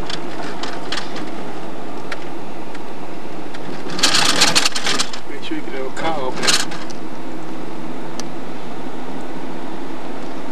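Steady engine and road noise inside a moving car's cabin, with a short burst of unclear voices from people in the car about four seconds in and another brief voice about two seconds later.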